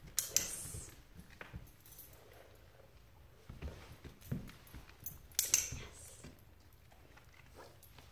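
A German Shepherd and its handler moving about on a hardwood floor: soft footfalls, with two brief louder scuffling sounds, one just after the start and one a little past five seconds in.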